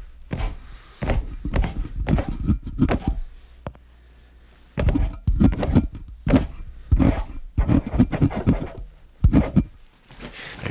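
Handling sounds close to a studio microphone: irregular soft thuds and rustles of hands and cloth against the mic and its shock mount, pausing for about a second midway before picking up again.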